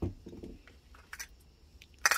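Faint handling noise of small metal carburetors in the hands, with a few light clicks about a second in and near the end.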